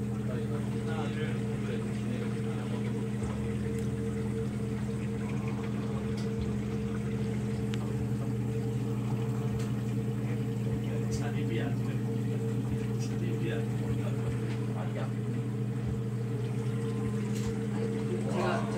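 A steady low hum of a small motor running without change.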